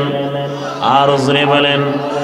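A man's voice chanting in a drawn-out melodic tone, holding one note for most of a second and then gliding up and down in pitch, in the sung delivery of a Bangla waz sermon.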